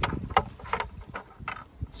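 A plastic bucket being handled and lowered over dry grass: a string of light, irregular knocks and clicks. Low wind rumble on the microphone runs underneath.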